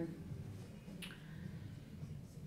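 Quiet room tone with a low hum, broken by a single short click about a second in.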